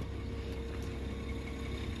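BMW 325i's 3-litre straight-six petrol engine idling steadily, heard from behind the car near the exhaust.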